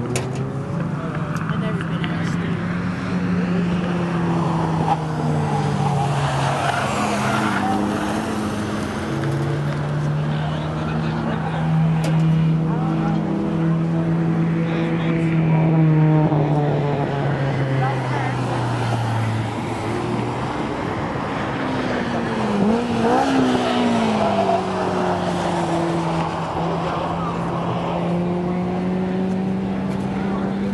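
Several car engines running on a race circuit, heard from trackside as a continuous mix of engine notes that rise and fall as the cars accelerate and slow. About three-quarters of the way through, one engine's pitch drops sharply and then climbs again.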